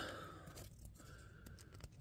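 Near silence, with faint rustling of glossy trading cards being shuffled from front to back of a stack in the hands.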